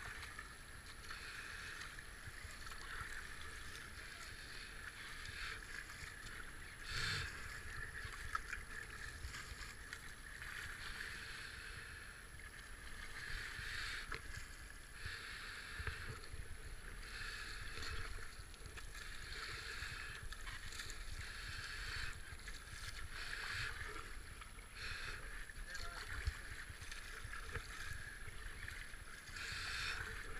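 Rushing white water of a river rapid with the splash of kayak paddle strokes, surging and easing as the boat runs the waves, picked up by a helmet camera.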